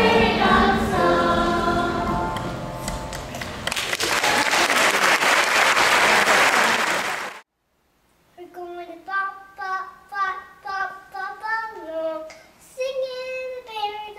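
A children's choir singing with accompaniment, fading out about three seconds in, then audience applause that cuts off suddenly. After a second of silence, a small boy sings alone in a light, high voice.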